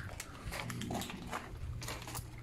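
Footsteps crunching on a gravel path, about two steps a second, over a low steady hum.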